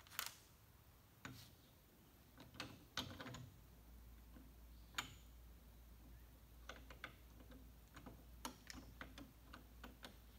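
Faint, scattered metallic clicks and taps from the parts of an SKS rifle being handled and fitted during reassembly, about one click a second at irregular intervals. A steady low hum comes in about a third of the way through.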